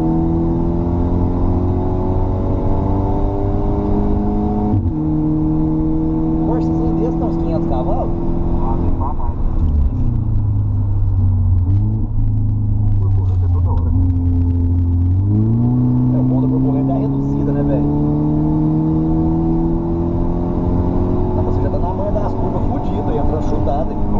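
Mercedes C250 Coupé's turbocharged four-cylinder engine under hard track driving. The revs climb, then drop sharply at an upshift about five seconds in. After a steady stretch they fall around ten seconds in and stay low for about five seconds, slowing for a corner, then rise steadily again under acceleration.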